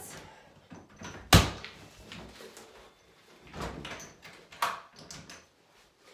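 Door being opened and an over-the-door swing's padded anchors pulled off its top edge. A sharp knock about a second in, then rustling of straps with a few lighter knocks.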